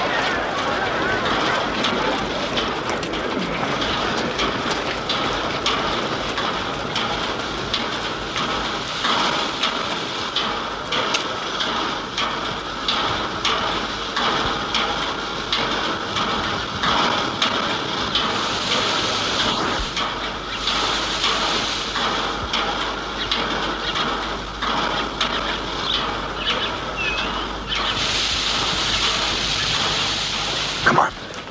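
Railway train noise: a steady, dense rumbling and clattering din, with bursts of hissing about two-thirds of the way through and again near the end.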